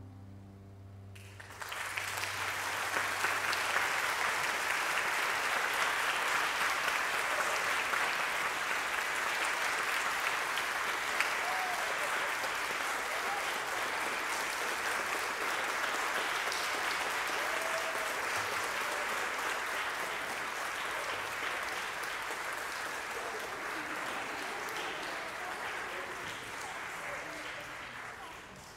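Audience applauding, starting about a second and a half in, holding steady, then dying away near the end.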